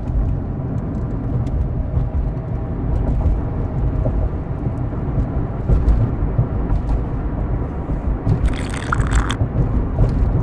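A vehicle's steady engine and road rumble, heard as if from inside while it drives along. A brief hissing burst comes about eight and a half seconds in.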